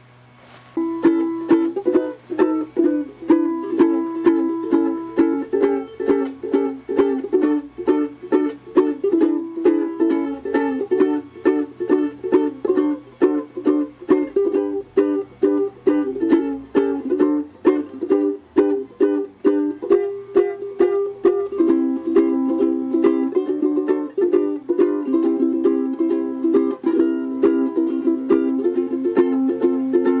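Ukulele strummed in a steady, even rhythm, starting about a second in. It works down a chord chart one chord at a time, a few strums on each chord, as a chord-change practice routine.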